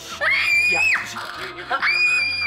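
A young boy screaming with excitement: two long, high-pitched held shrieks about a second apart.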